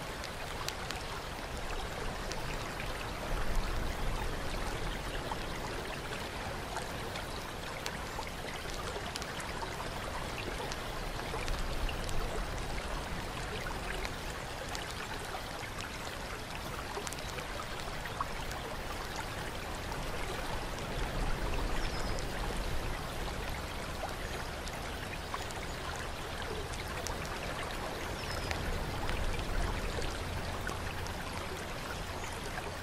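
Steady running and trickling water, like a fountain pouring into a stone bath, with faint scattered drips. A low rumble swells up now and then underneath.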